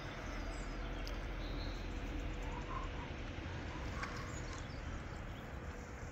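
Railway station ambience: a steady low rumble and hum with a constant faint tone, and a few faint bird chirps.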